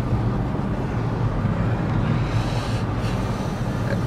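Steady low drone of road and engine noise inside a car's cabin while driving.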